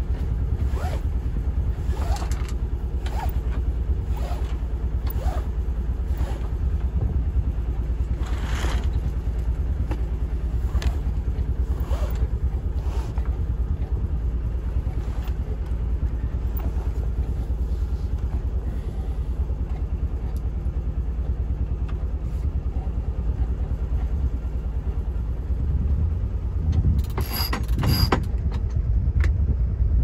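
Steady low drone of the yacht's engine. Over it, irregular short rasps and clicks come about once a second for the first dozen seconds as the reefing line is hauled in, and a louder cluster of clicks comes near the end.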